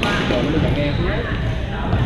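Badminton racket striking a shuttlecock with a sharp crack, echoing in a large gym hall, over the chatter of players' voices.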